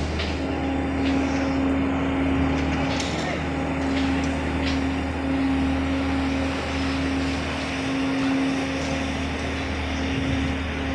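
Steady running of construction machinery: a constant engine drone with an unchanging hum and low rumble, and a few faint clicks.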